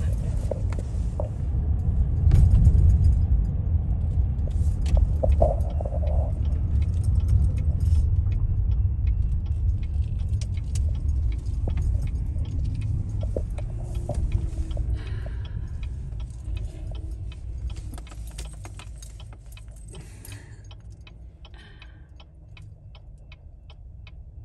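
Freight train rolling slowly past, heard from inside a car: a low rumble with scattered clicks and clanks of wheels and cars. The rumble fades steadily over the second half.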